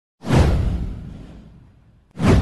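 A whoosh sound effect with a low rumble under it. It comes in suddenly about a quarter of a second in and fades away over about a second and a half.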